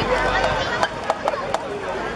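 Several people talking over one another, with four short sharp clicks in the second half.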